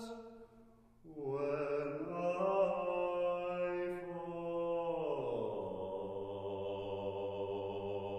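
Small mixed choir of sopranos, altos, tenors and basses, two voices to a part, singing slow sustained chords. One chord dies away and there is a brief silence. About a second in a new chord enters and is held, and around five seconds the lower voices slide down into a new held chord.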